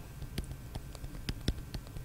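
Light, irregular clicks and taps of a stylus on a tablet as an equation is handwritten, about a dozen small ticks over two seconds.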